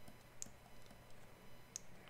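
Two faint, short clicks about a second and a half apart from the computer input used for digital sculpting, over a faint steady low hum.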